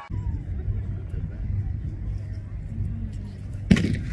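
Low, steady wind rumble on the microphone at an open-field race start, then a single sharp crack near the end: the starter's gun setting off a cross-country race.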